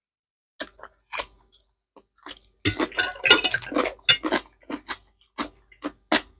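Close-miked eating sounds: sparse wet mouth clicks and chewing, with a loud, dense stretch of crunching and smacking for about two seconds in the middle, then scattered chewing clicks again.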